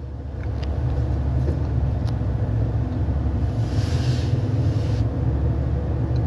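Steady low rumble of a car, heard from inside the cabin, with a brief soft hiss about four seconds in.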